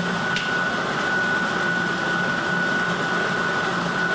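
Air-mix lottery drawing machine's blower running steadily as it mixes the balls before the first one is drawn: rushing air with a thin steady whine. One short click about half a second in.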